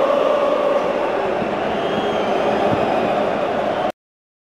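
Large football stadium crowd singing together, heard through a TV broadcast; the sound cuts off abruptly just before the end.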